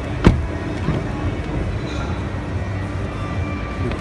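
A single sharp click of the Dacia Duster's rear door latch as the door is opened, about a third of a second in, over the steady hum of a busy exhibition hall with music playing.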